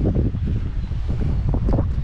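Wind buffeting the camera microphone outdoors: a steady, uneven low rumble.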